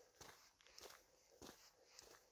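Faint footsteps on a floor of dry pine-needle litter, one step about every 0.6 seconds.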